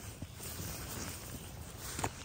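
Soft rustling of a white fabric frost cover as it is pulled off a planted flower container.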